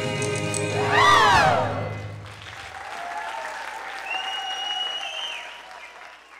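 A cast and band end a musical-theatre song on a held chord, capped by a loud final sung note that swoops up and falls away about a second in. An audience then applauds, with a long high cheer near the middle, and the applause dies down near the end.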